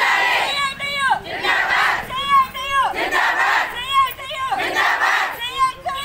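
A group of women shouting protest slogans in unison, fists raised: four chanted phrases in about six seconds, each swinging up and down in pitch, with ragged crowd voices between them.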